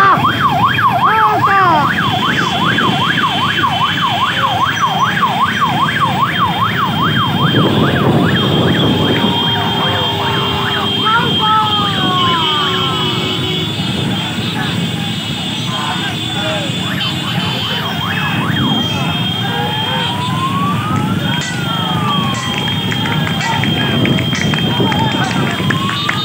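Electronic siren horns on motorcycles, first a fast warble of about two to three yelps a second, then slower rising-and-falling wails, over the engines of many motorcycles riding in a column.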